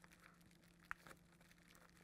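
Near silence, broken about a second in by one short click, the tube clamp snapping shut on the resin feed line of a vacuum-bag infusion.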